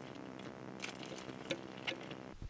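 Light handling clicks and taps as hands move a copper tube and close a fabric tool pouch, with a few sharp ticks about a second in, midway and near the end. A faint steady hum runs underneath.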